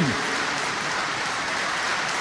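Large audience applauding, a dense, steady wash of clapping with no single claps standing out.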